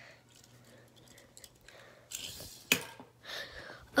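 Faint handling noise of toy cars being moved on carpet: light rustles and small clicks, with a sharper single click just before three seconds in.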